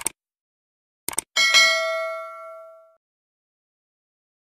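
Sound effect for an on-screen subscribe-button animation. A short click is followed about a second later by a quick double click, then a single bell-like ding that rings out and fades over about a second and a half.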